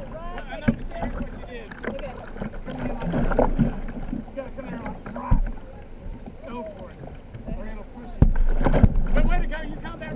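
Kayak paddling on a whitewater river: paddle strokes in rushing water, with a few sharp knocks against the boat and wind buffeting the deck-mounted microphone, stronger about eight seconds in. Indistinct voices run underneath throughout.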